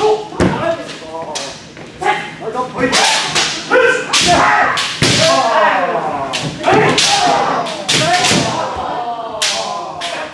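Kendo practice: repeated kiai shouts mixed with many sharp cracks of bamboo shinai striking armour and feet stamping on a wooden floor, a dozen or so impacts with the shouts in between.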